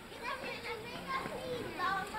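Indistinct background voices, children's chatter among them, with no clear words.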